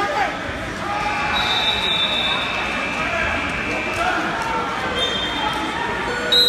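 Crowd hubbub in a gymnasium: many spectators talking and calling out at once, a steady blur of voices with no single speaker standing out.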